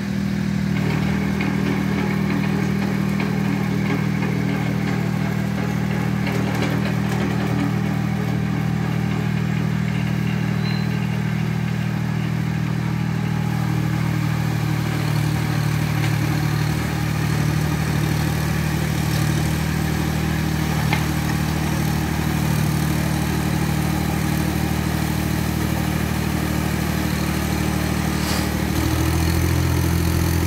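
Iseki TS2810 tractor's diesel engine running steadily as the tractor works a wet paddy field on steel cage wheels. The engine note changes near the end.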